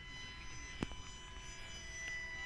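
Faint steady drone of an RC P-38 model airplane's motors flying overhead, with one sharp click a little before the middle.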